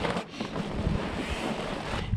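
Wind buffeting the microphone: a steady rushing noise with low rumbling gusts.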